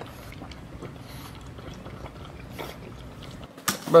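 French bulldog puppy eating wet food from a bowl: faint, wet eating sounds that come and go, with a sharp click just before the end.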